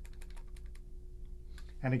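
Clarinet keys and fingers clicking as the left-hand fingers move quickly over the keys and tone holes, with no note blown: a quick run of light clicks in the first second.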